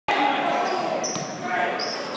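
Basketball game play on a hardwood gym floor: sneakers squeak several times and the ball bounces once, over voices echoing in the hall.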